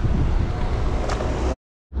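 Wind buffeting an outdoor microphone as a steady low rumble, broken off by a brief dead-silent gap about one and a half seconds in.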